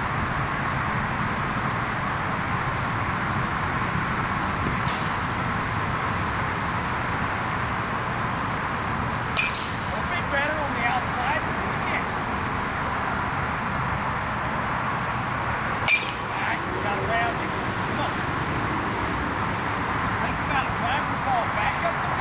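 Steady outdoor background noise with faint voices, broken by a few brief sharp clicks.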